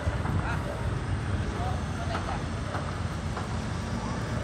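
Outdoor street ambience: a steady low rumble with faint, distant voices of people nearby.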